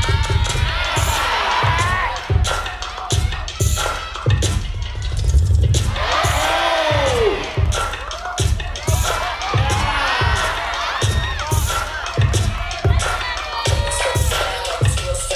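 Hip hop beat played over a sound system, a steady kick drum thumping, with the crowd cheering and shouting over it throughout; a loud falling whoop rises above the crowd about six seconds in.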